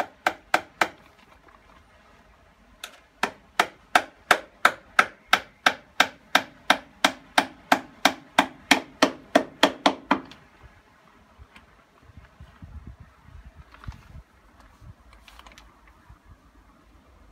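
Hammer striking timber: three quick blows, then after a short pause a steady run of about twenty blows at roughly three a second, fixing a fence-paling board to the side of a deck. After that, softer low knocks and handling of the wood.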